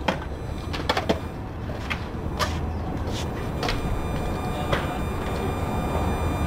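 Steady low outdoor rumble with about seven scattered sharp clicks and knocks, the loudest about two and a half seconds in.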